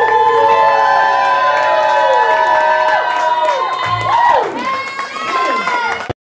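Live club crowd cheering and whooping as a rock band's song ends, with long high notes sliding up and down over it and a low thud about four seconds in.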